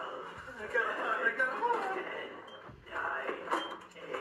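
Faint voices from a film playing through a laptop's speakers.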